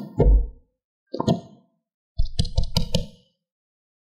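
A few soft plops, then a quick run of clicks and knocks a little after two seconds in, as small hard red candy balls pour into a plastic tray.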